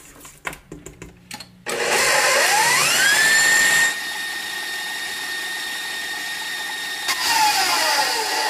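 An electric stand mixer starts up about two seconds in, its motor whine rising in pitch and then holding steady while the flat beater churns a thick filling in the steel bowl. Near the end the whine falls in pitch as the motor slows. Before it starts there are a few light knocks against the bowl.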